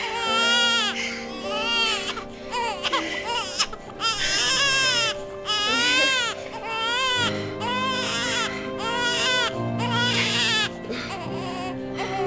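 Newborn baby crying in a run of repeated wails, each about a second long, over soft background music with held chords.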